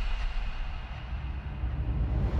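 A low, steady rumble in a dramatic trailer soundtrack between louder music passages. It thins out partway through, then swells again near the end.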